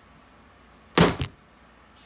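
A single short thud about a second in, lasting well under half a second, with near silence around it.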